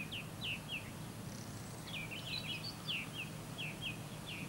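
A small bird chirping in short, quick falling notes: a run of four near the start, then a longer, faster series in the second half, over a steady low background hum.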